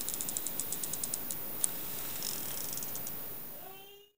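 LEGO Technic pull-back motor of the 42026 Black Champion Racer being wound: its ratchet clicks about ten times a second as the car is drawn back. After a single louder click there is a short whir of the motor running down, and the sound fades out at the end.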